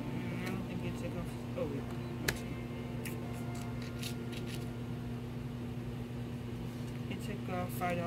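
Checkout-counter ambience: a steady low electrical hum with faint voices, and a few light clicks, the sharpest about two seconds in.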